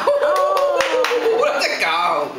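Hands clapping several times in quick succession along with a high, drawn-out laughing voice, as praise for a child's right answer.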